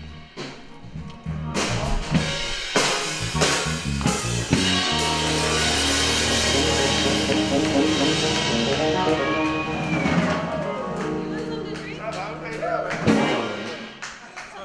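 Live band with drum kit and electric guitar bringing a song to its close: a few drum hits, then a long held chord over the drums, cut off by one last hit near the end.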